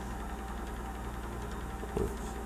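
A steady low hum with no change in level.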